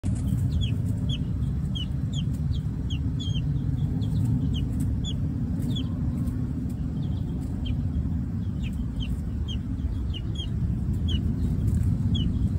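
Young chicken peeping: short, high calls that slide down in pitch, about two a second, over a steady low rumble.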